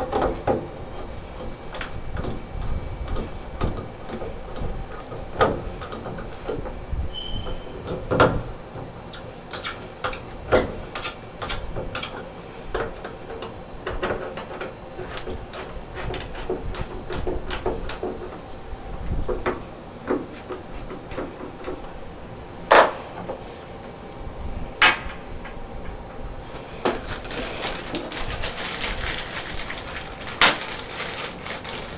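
Screwdriver and hand work on a chrome shower-valve trim plate: scattered metal clicks, taps and scrapes, with a run of about six sharp ringing clinks about ten to twelve seconds in, and a rubbing hiss near the end.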